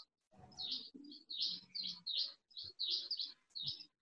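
A bird chirping: a quick run of short, high notes, about three a second.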